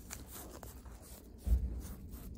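Gauze pad moistened with alcohol rubbing and wiping over the skin of a lower leg, a soft scratchy rubbing. A dull low thump about one and a half seconds in.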